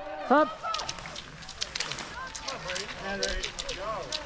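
Cross-country skis and poles on hard-packed snow: a quick run of sharp clicks and scrapes from pole plants and ski strides, under faint distant voices.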